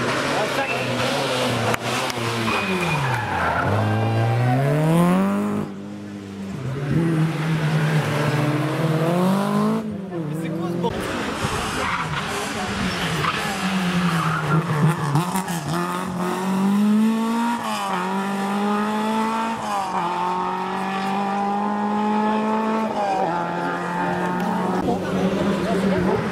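Rally car engines revving hard through the gears on a closed stage, one car after another, starting with a Citroën Saxo and including a Renault 5. Each car's engine note climbs and drops back sharply at every gear change. The sound breaks off abruptly twice where the footage cuts between cars.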